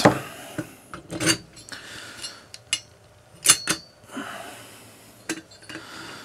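Sharp metallic clicks, taps and light scraping as an aluminium cylinder head and hand tools are handled on the cylinder studs of a Simson M500 two-stroke moped engine. The clicks are spread out, about a second or more apart, and the loudest comes about three and a half seconds in.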